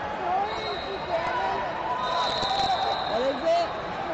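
Indistinct overlapping voices of spectators and wrestlers in a large sports hall, with a few dull thuds mixed in.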